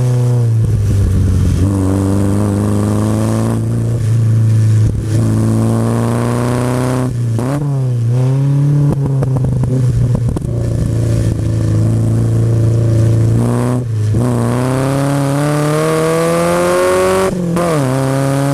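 1959 Triumph TR3A's four-cylinder engine heard from the open cockpit, driven hard. The note climbs with the revs and drops sharply several times at gear changes, with a short lift and dip in revs around a bend near the middle.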